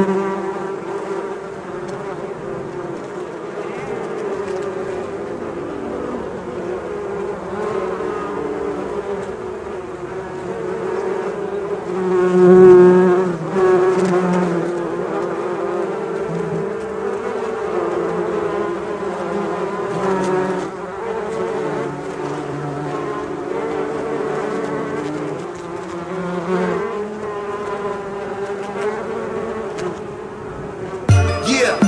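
A swarm of bees buzzing: a steady drone of several overlapping, wavering pitches, swelling louder about twelve seconds in.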